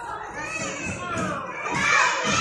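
Several young children shouting and chattering together, their high voices overlapping, with the loudest cry near the end.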